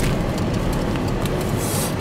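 Steady low rumble inside a car, with the crinkle and rustle of a paper burger wrapper being handled and a brief hissing crinkle near the end.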